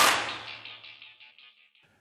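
Closing hit of a TV show's rock-style intro theme: one sharp crash at the start that rings and echoes away, fading out within about a second and a half.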